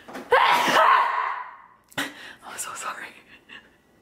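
A woman's loud, breathy vocal exclamation without words, trailing off after about a second and a half, followed by a sharp click about two seconds in and faint handling sounds.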